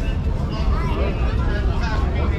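Street chatter: several passers-by talking at once around the microphone, over a steady low rumble.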